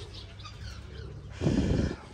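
Faint chirping of small birds in the background, broken about one and a half seconds in by a short, loud rustling noise lasting about half a second.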